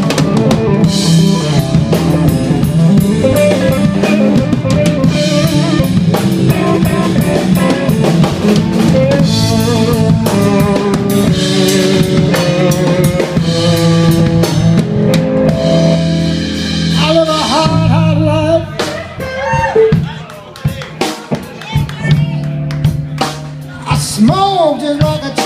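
Live blues band playing an instrumental passage: electric lead guitar over bass guitar and a drum kit. About three-quarters of the way through, the band thins out, leaving a few sparse, bent guitar notes.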